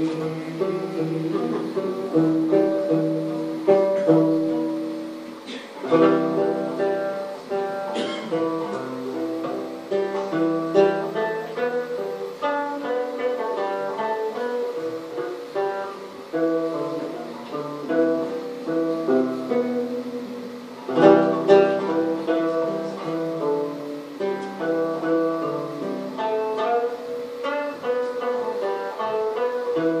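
Early-style gourd banjo played solo: a plucked melody on single notes, with strummed chords striking out about 6, 8 and 21 seconds in.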